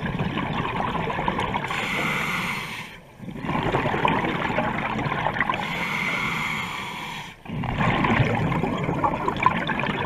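Scuba diver breathing through a regulator underwater: rushing bubbles and regulator hiss in about three breath cycles, each lasting around four seconds, with a short lull between breaths.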